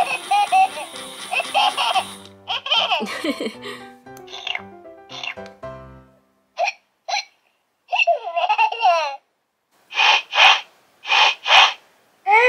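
Baby Alive Baby Gotta Bounce doll's recorded baby voice through its small speaker. For about the first six seconds a tune plays under sing-song baby vocals; then come a string of short baby giggles and babbles with gaps between them.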